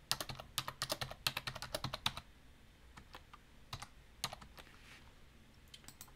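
Computer keyboard typing: a quick run of keystrokes for about two seconds as a date is typed into a form field, then a few single clicks spaced out through the rest.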